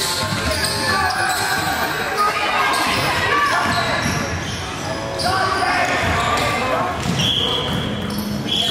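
Indoor gym court sound: basketballs bouncing on a hardwood floor under the chatter and calls of many players. There is a short high squeak a little after seven seconds.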